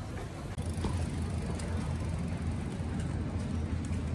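Street ambience in a narrow city lane: a steady low rumble of traffic and passing vehicles.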